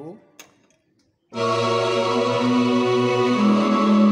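Yamaha electronic keyboard playing held chords on a layered strings-and-choir voice (strings with choir added through the keyboard's Dual function), coming in about a second in with a chord change past the three-second mark.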